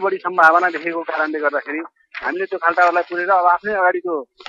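Speech only: a voice talking steadily, with one brief pause about two seconds in.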